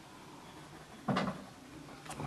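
Faint scratching of a coloured pencil on paper, with one short knock about a second in.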